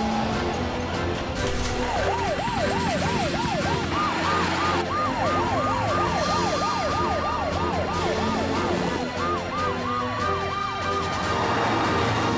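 Cartoon rescue-vehicle sirens: a fast, repeating up-and-down yelp, with two or more sirens overlapping, starting about two seconds in and running over background music.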